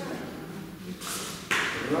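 Indistinct voices talking in a room, with short hissing sounds about a second in and again near the end.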